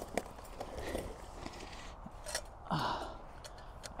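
A man's short voiced sigh about three seconds in, over faint rustling with a few small clicks.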